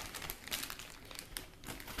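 Clear plastic packaging crinkling and crackling irregularly as it is handled and unwrapped.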